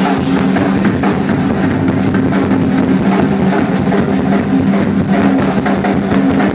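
Rock drum kit in a live drum solo: an unbroken fast roll on the toms, its pitch switching between two drums, with no pause in the strokes.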